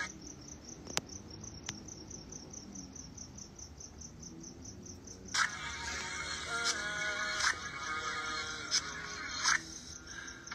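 A cricket chirping in a fast, even, high-pitched pulse, heard on its own for about the first five seconds, with a couple of faint clicks early on. Music comes back in about five seconds in.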